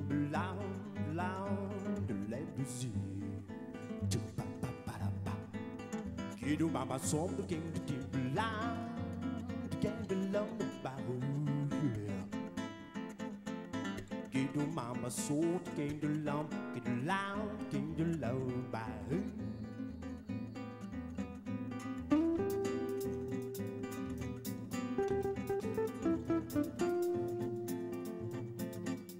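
Live band playing a Latin jazz tune led by acoustic guitar, with a voice singing a gliding, wordless line over it for most of the first twenty seconds. From about 22 seconds in, longer held notes take over.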